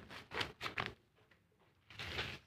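A few short rustles and scrapes of potting soil being handled on woven plastic sacking, bunched in the first second and then fading to a quiet stretch.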